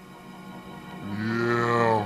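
Intro of a slowed-down hip-hop track: after a low hum, a deep, drawn-out pitched voice-like sound comes in about halfway through, rising slightly and then falling.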